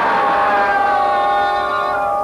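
Horror-film score: a loud held chord of several steady tones, the upper ones sliding down slightly in pitch in the second half.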